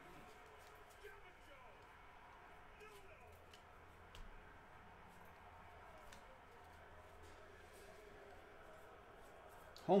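Faint ticks and soft slides of glossy trading cards being flipped through by hand, over low, distant background voices. A man's voice cuts in right at the end.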